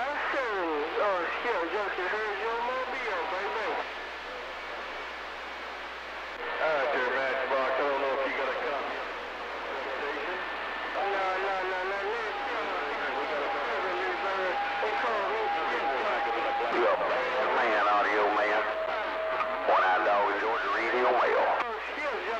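CB radio receiving distant skip: several operators' voices come through garbled and warbling, too broken to make out. A steady whistling tone is held for several seconds about halfway through, and a shorter one comes near the end.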